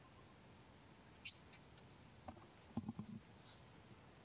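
Near silence, with a few faint short sounds: a brief high squeak about a second in and soft low knocks near the end.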